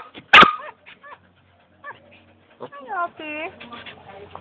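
A dog barks once, loud and sharp, right at the microphone about a third of a second in, then makes softer, short sounds.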